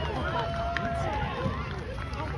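Several people's voices calling out in drawn-out tones over a steady low outdoor rumble, with one sharp tap about three quarters of a second in.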